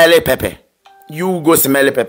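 Two short bursts of a pitched voice, with a brief faint beep in the gap between them about a second in.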